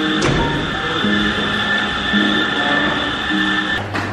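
Background music with a sequence of short pitched notes, over a steady high tone that cuts off just before the end.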